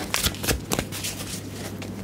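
Tarot cards being shuffled by hand, with several quick sharp card snaps in the first second and softer rustling after.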